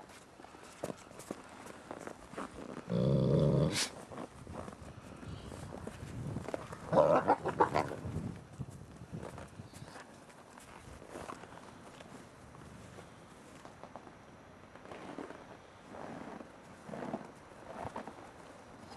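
Gray wolves growling and snarling in short bouts during a dominance interaction: a loud growl about three seconds in, a louder snarling flurry about seven seconds in, and fainter ones near the end. Paws scuff and crunch in snow between the bouts.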